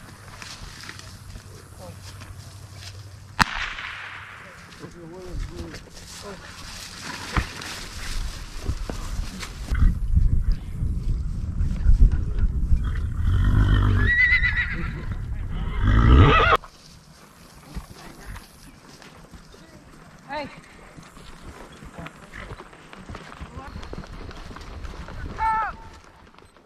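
A horse whinnying in the middle of the clip, over rumbling wind noise on the microphone and the movement of horses.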